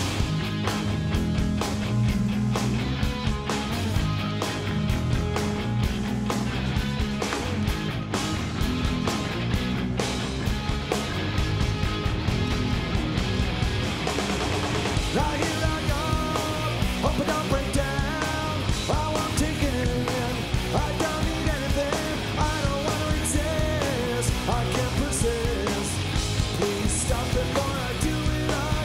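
Punk rock band playing live through a large outdoor PA: distorted electric guitars, bass guitar and drums at a steady beat, with a male lead vocal coming in about halfway through.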